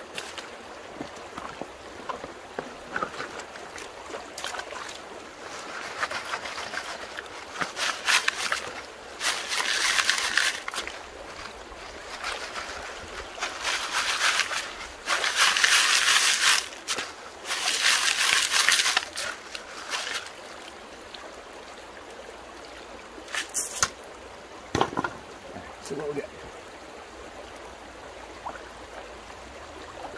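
Creek water sloshing and gravel rattling as a mesh sifter nested on a plastic gold pan is shaken under water to wash material through the screen, in several bursts of a few seconds each. A stream runs steadily behind it.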